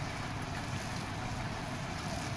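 Steady background noise, an even hiss and low rumble with no distinct strikes or clicks.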